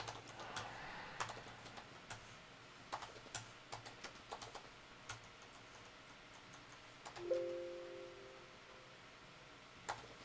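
Computer keyboard keys clicking in scattered strokes as switch configuration commands are typed. About seven seconds in, a short electronic chime of two steady tones sounds and fades over about a second.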